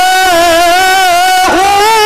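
A Quran reciter's voice in melodic tilawah style, holding one long note with small wavering ornamental turns, the pitch stepping up slightly near the end.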